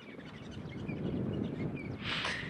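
Faint, scattered bird chirps over a low, noisy rumble of wind on the microphone that grows louder through the clip.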